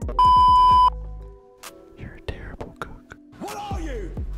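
Edited-in test-pattern beep over a colour-bars screen: one steady, loud, high-pitched tone lasting under a second near the start. Quieter speech from an inserted clip follows near the end.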